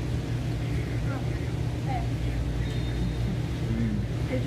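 Restaurant room noise: a steady low hum of ventilation or air-conditioning fans, with faint voices in the background.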